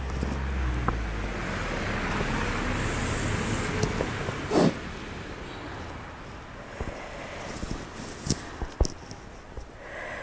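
A car passing on a wet, slushy road: tyre noise swells over the first few seconds and fades away by about six seconds in. Scattered light clicks follow near the end.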